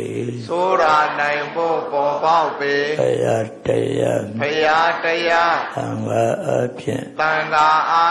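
An elderly Burmese Buddhist monk chanting in a low male voice into a handheld microphone, in phrases of long held notes with short breaths between them.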